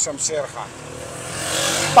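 A motor vehicle passing close by on the street, its engine and road noise growing steadily louder through the second half.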